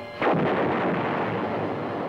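A single shot from an M60 tank's main gun, a sudden loud blast about a fifth of a second in that fades slowly over the next two seconds.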